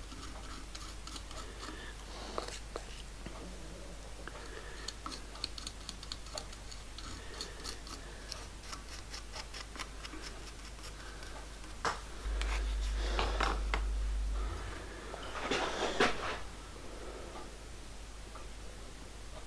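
Light ticks and scrapes of a wooden stick dabbing flux paste into a crack in a metal speedometer drive gear, over a low steady hum that grows louder for about two seconds just past the middle. A short, louder scraping rustle comes near the end.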